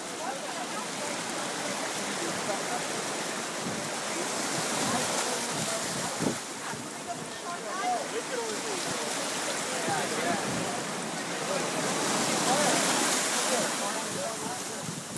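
Shallow surf washing around people's legs, its hiss swelling about five seconds in and again near the end as waves surge in. Several voices talk indistinctly underneath.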